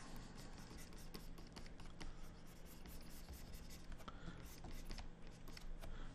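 Stylus nib scratching and tapping on a pen display's screen in quick, irregular light strokes, faint, over a low steady hum.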